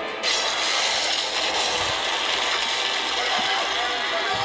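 Cartoon disaster sound effects heard through a TV speaker: a loud, steady hissing and crackling that starts suddenly just after the beginning, for a fire hydrant bursting and the ground breaking apart.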